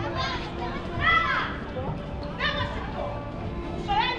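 Children's high voices calling out three times over the chatter of a street crowd, with faint music underneath.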